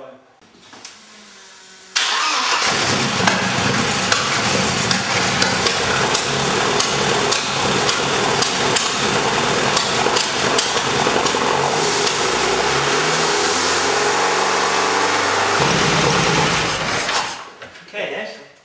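Mercedes 190E Cosworth 16-valve four-cylinder, newly converted to throttle-body fuel injection, catches about two seconds in and runs at a fast idle with a slight misfire, its revs rising for a while later on, before being shut off near the end. The fast idle comes from the throttle cable being over, and the misfire from fuelling on the rich side at about 11.5 to 1.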